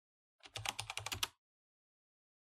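Keyboard-typing sound effect: a quick run of about ten key clicks lasting under a second, starting about half a second in.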